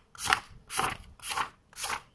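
Sheets of A5 paper swished off a stack by hand and laid down in turn, four swishes about two a second: photocopies being sorted into sets manually.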